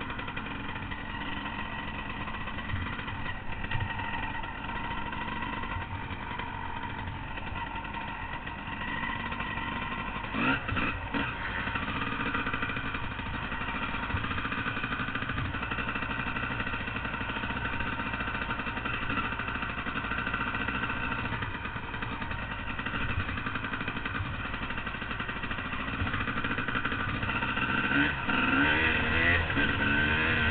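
Dirt bike engine running on a trail ride, its pitch shifting with the throttle. There is a short knock about ten seconds in and a rise in revs near the end.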